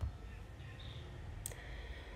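Low steady room hum with a soft bump at the start and a single sharp click about one and a half seconds in, the click that advances the presentation slide.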